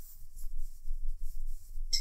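Soft rustling and scratching of yarn being pulled through and over a crochet hook as a double crochet stitch is worked, over a faint low hum.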